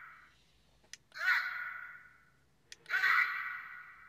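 Ultra Replica Beta Capsule toy's speaker playing short recorded Ultraman shouts, one per short press of its A button. A small button click comes about a second in and another near three seconds, each followed by a shout of about a second that fades out. The fading end of a previous shout is heard at the start.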